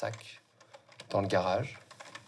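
Typing on a computer keyboard, a run of light key clicks, with a short stretch of a person's voice about a second in.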